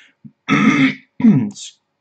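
A man clearing his throat: a rough burst about a quarter of the way in, then a shorter sound that falls in pitch.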